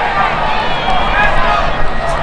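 Many voices of marching band members shouting together at once, with no instruments playing.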